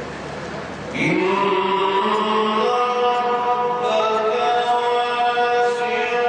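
A male Qur'an reciter chanting in melodic tajweed style. After about a second of background noise, his voice enters with an upward glide and then holds long, drawn-out notes.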